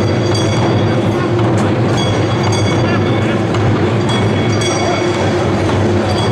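Taiko drum ensemble playing chu-daiko barrel drums with wooden bachi sticks in a fast, dense, continuous run of strokes. A bright metallic ringing comes in every couple of seconds over the drums.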